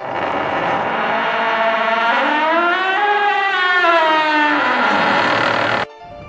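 Intro sound effect: a rushing swell with a layered tone that glides slowly up and then back down, cutting off suddenly just before the end.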